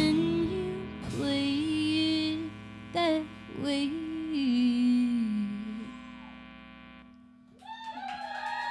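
Live band ending a song: a woman sings the last held lines over acoustic guitar, electric guitar and bass, her final note sliding down while the instruments ring out and fade away. Near the end the audience starts to cheer.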